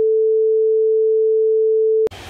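A stand-by test tone: a single pure electronic tone held loud and unchanging at one pitch, the beep that goes with a 'technical difficulties, please stand by' card.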